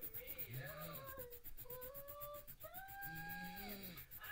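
Colour pencil scratching quickly back and forth on card as a drawing is coloured in, a steady run of fine scratches. Over it come two drawn-out whining tones, the second higher and longer.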